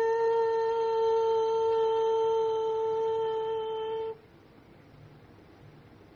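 A woman's singing voice holding one long, steady note for about four seconds, then stopping; only faint hiss remains after.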